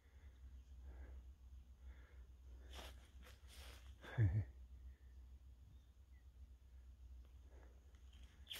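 Quiet bush ambience: a steady low wind rumble on the microphone, with a brief burst of rustling about three seconds in.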